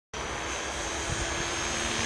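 Align T-Rex 550E electric RC helicopter flying overhead in idle-up mode: its brushless motor and main rotor give a steady high whine over a lower steady hum.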